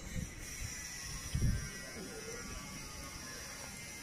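Low, uneven rumble of wind and handling noise on a handheld phone microphone, with a low bump about a second and a half in and a brief faint voice in the background.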